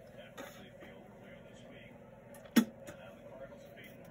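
Faint rustling and light clicks of a stack of baseball cards being handled and shifted in the hand. One short spoken word cuts in about two and a half seconds in.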